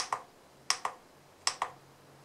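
Keypad button of a JINHAN JDS2023 handheld oscilloscope/signal generator pressed three times, each press giving a sharp double click, about three-quarters of a second apart. The presses step the signal generator's waveform setting through to square wave.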